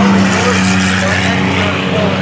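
Cars in a Race Your Junk heat running laps on an oval track, with a steady low drone from the field and one car passing close by about half a second in.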